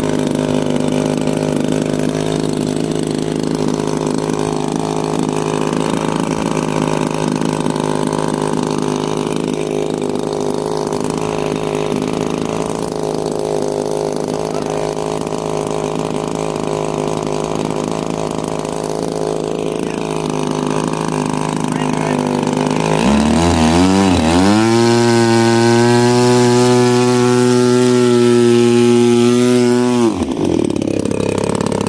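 DLE-35 single-cylinder two-stroke gasoline engine of a large RC model plane, running steadily on the ground at low throttle. About three-quarters of the way in it revs up, the pitch climbing and wavering, then holds at a higher, louder speed before dropping right at the end.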